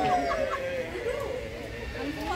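Onlookers' voices chattering over one another, with one drawn-out voice sliding down in pitch during the first second.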